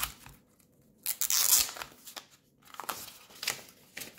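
Hands handling a small hard-plastic solar panel, with light clicks and knocks of its case and rasping scrapes, the loudest about a second in.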